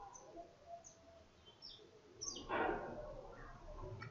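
Faint bird chirps: a few short, high calls that slide downward in pitch, with one louder call about two and a half seconds in.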